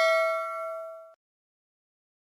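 Sound-effect notification bell ding ringing out with several pitches, fading and then cutting off abruptly about a second in.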